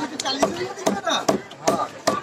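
A small fish, a climbing perch (koi), scraped and struck against the steel edge of a curved boti blade as it is scaled and cut: four sharp strokes a little under half a second apart.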